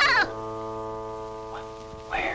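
Film score music: a wavering upward swoop that peaks just after the start, then a held chord that slowly fades.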